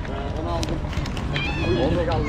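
City street ambience: a steady low traffic rumble with people talking in the background. A short high-pitched call, with a faint upward bend, comes about a second and a half in.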